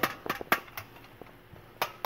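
Handling noise from a tin-litho toy army vehicle: a few sharp clicks and taps of thin tin sheet metal, the loudest about half a second in and near the end, with fainter ticks between.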